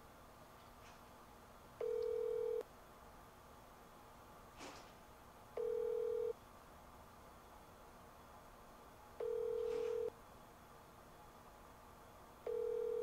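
Outgoing phone call's ringback tone through the phone's speaker: three steady beeps, each under a second, about three and a half seconds apart, with no answer.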